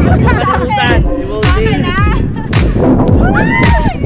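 Wind buffeting the phone's microphone with a low rumble and several heavy thumps, mixed with high voices laughing and calling out.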